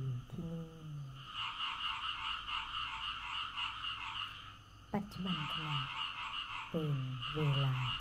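A chorus of frogs croaking in an even pulsing rhythm, about four pulses a second. It starts about a second in, breaks off for a moment just before the halfway point and resumes, under a woman's soft speaking voice.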